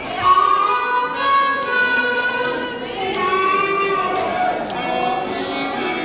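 Blues harmonica played cupped together with a handheld microphone and amplified: slow phrases of long held notes, some bent in pitch.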